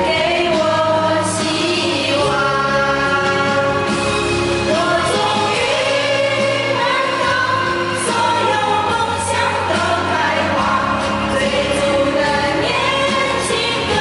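A group of women singing together into microphones over amplified backing music, in sustained melodic lines.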